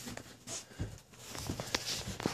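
Footsteps of a person walking: several soft, irregularly spaced steps.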